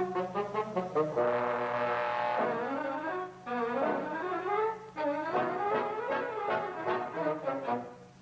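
Brass-led orchestral cartoon score: quick, clipped notes, then a held brass chord about a second in, followed by fast runs of notes up and down.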